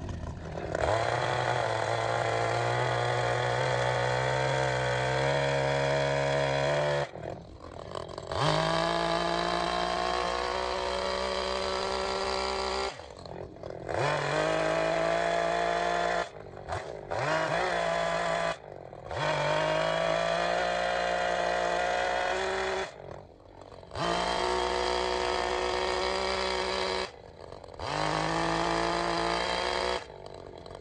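Echo two-stroke chainsaw cutting into a wood block to rough out its shape. It is held on the throttle for several seconds at a time and lets off briefly about six times between cuts.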